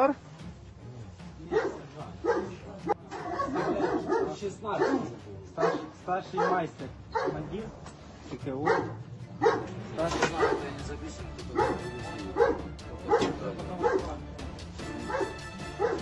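A dog barking repeatedly, short barks coming about once or twice a second.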